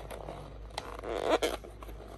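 White paper packaging rustling and crinkling as fingers pick and pull at it. There are a few small clicks, and the rustle is loudest about a second in.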